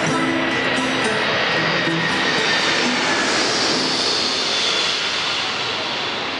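A few held harmonica and guitar notes from a live band, under a loud, steady rushing noise whose high hiss swells and fades around the middle.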